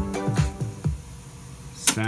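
Electronic music with a steady beat playing back from a Pioneer CT-F500 cassette deck through small Bose speakers, stopping about a second in and leaving faint hiss. Near the end comes one sharp click from the deck's stop/eject transport key.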